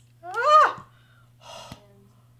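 A woman's short, rising yelp of surprise, followed about a second later by a quieter breathy exhale.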